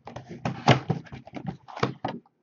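A cardboard trading-card box being torn open by hand: an irregular run of crackling and ripping of the box and its packaging, loudest about two-thirds of a second in and again near the end.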